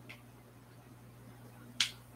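A single sharp click near the end, with a much fainter click at the start, over a low steady hum.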